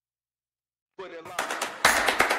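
Dead silence, then about a second in a rapid run of sharp percussive hits starts and grows louder, with a harder hit near the end. It is the opening of an edited-in music sting that leads into a title card.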